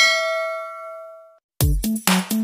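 A notification-bell chime sound effect: a single ding that rings and fades away over about a second and a half. Electronic dance music with a heavy beat starts near the end.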